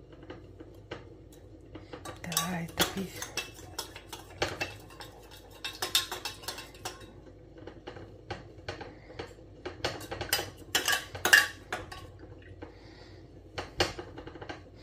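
Metal teaspoon clinking and scraping against a glass mug while stirring a drink, in irregular clusters of sharp clinks, the loudest a little after ten seconds in.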